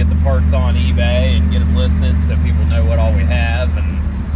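A man talking inside a moving vehicle's cab, over a steady low drone of engine and road noise.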